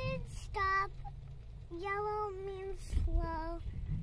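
A young girl's high voice in a sing-song, three held notes or phrases with the middle one longest, as she answers a question. A low, steady rumble of car road noise runs underneath.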